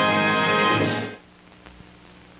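The show's orchestral theme music ending on a long held chord that cuts off about a second in, leaving only a faint low hum.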